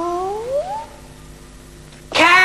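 A long, drawn-out imitation cat meow voiced for a cat puppet. It sinks in pitch, then swoops upward and stops just under a second in, leaving only a faint low background.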